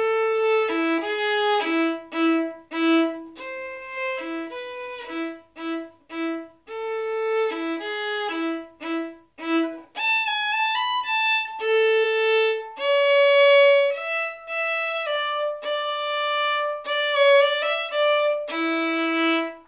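Solo violin, bowed, playing a minuet: short, separated notes for the first half, then longer, higher sustained notes from about halfway through.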